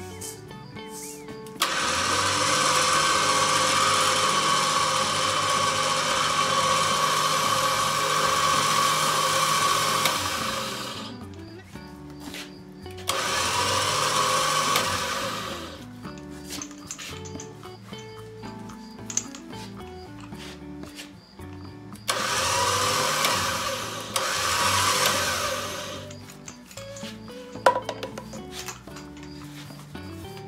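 Smittybilt X20 electric winch motor reeling in its synthetic rope. It runs in three pulls, one long pull of about nine seconds and two shorter ones of about three seconds, with a sharp clack near the end.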